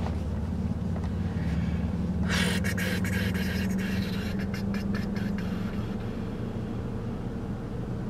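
Steady low hum of a car idling, heard from inside the cabin, with a brief rustle and a few small clicks between about two and a half and five seconds in.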